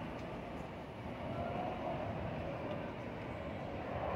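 Steady low rumble of city street noise, swelling slightly about a second in.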